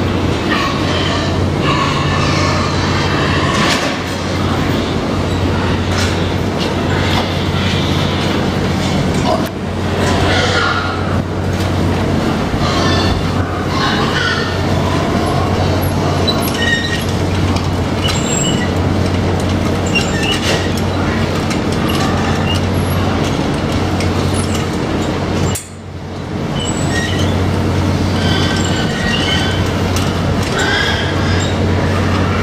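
Hog barn din: a steady low mechanical hum under a mass of short squeals and grunts from a pen of pigs, with scattered clanks. The sound dips briefly about 25 seconds in.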